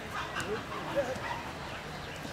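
Open-air sound at a football ground: scattered spectators' voices with a couple of short, high yelping calls about half a second and one second in.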